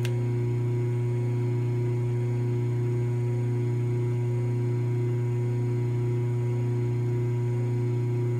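Washing-machine induction motor running through a light dimmer switch turned down to just above off, giving a loud, steady electrical hum. It is still spinning at near full speed, about 1785 RPM: the motor keeps chasing line frequency and the dimmer does not slow it.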